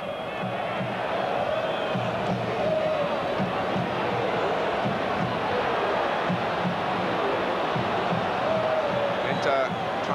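Football stadium crowd chanting and singing: a steady mass of voices with wavering held notes, no single voice standing out.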